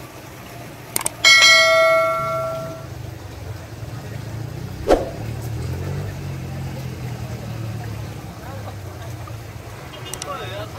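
Subscribe-button sound effect: mouse clicks, then about a second in a notification bell chime that rings out and fades over about a second and a half. Another single click comes near the middle, over a steady low background.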